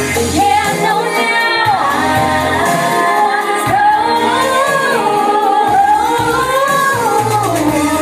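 Woman singing into a microphone over an amplified pop backing track with a recurring bass line; her melody slides through long held notes in the second half.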